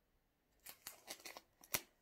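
Scissors snipping through the plastic shrink-wrap on a book: a quick run of short sharp snips starting about half a second in, the last one the loudest.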